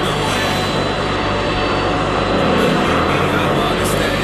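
Jet airliner engine noise, a steady dense rush, laid over background music with steady low notes.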